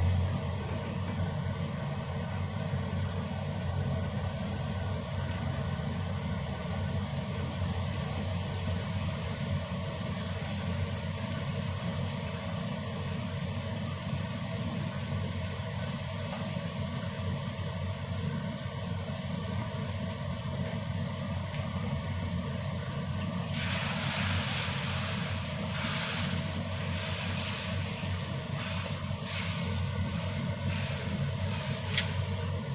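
Spice paste frying in oil in a wok, a steady sizzle over a low hum. In the last six seconds a spatula starts stirring and scraping the paste against the pan, louder and brighter with short scrapes.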